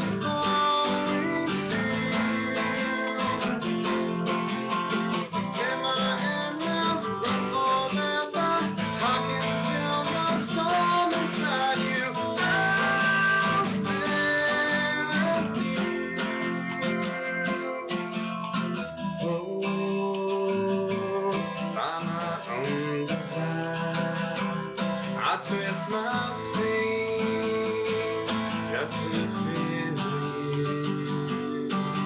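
Acoustic guitar strummed steadily in a song accompaniment, chords ringing continuously.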